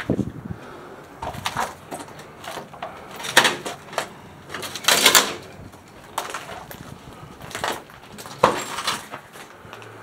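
Irregular scuffing steps and knocks as someone goes through a metal-framed glass door into a hallway, about a dozen in all, the loudest and longest about five seconds in.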